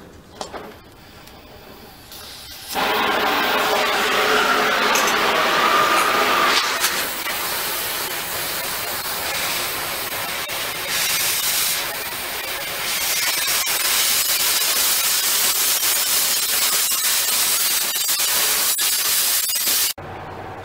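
Oxy-fuel cutting torch hissing as it cuts through the steel plate of a locomotive saddle tank. A soft hiss at first, then the loud cutting hiss starts suddenly under three seconds in, eases somewhat through the middle and comes back up near the end.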